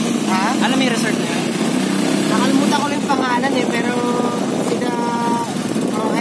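A vehicle engine running steadily, heard from inside the moving vehicle, with people's voices over it.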